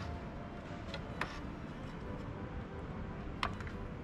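Miter saw's turntable being turned and set to an angle: three faint, separate clicks of its metal table and lock handle over a steady low room hum.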